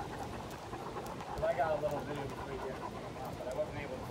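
A person's voice, brief and indistinct, about a second and a half in, over steady outdoor street background noise.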